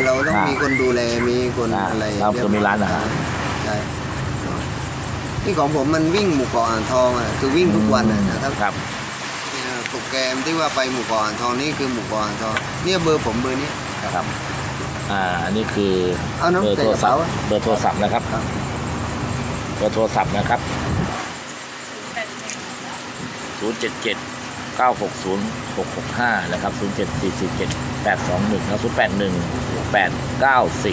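Men talking in Thai, with phone numbers read out, over a steady low motor hum that drops away about 21 seconds in.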